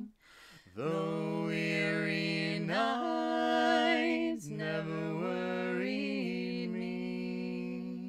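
Two voices singing a slow sea shanty unaccompanied, in long held notes, with a short breath pause about a second in and another about halfway.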